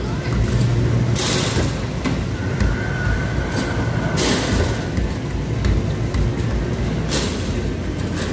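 Arcade basketball machine in play: basketballs hitting the backboard and hoop and rolling back down the ramp, with three louder bursts about a second, four seconds and seven seconds in, over the steady low rumble and chatter of a busy arcade hall.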